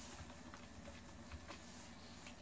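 A few faint, separate keystrokes on a computer keyboard.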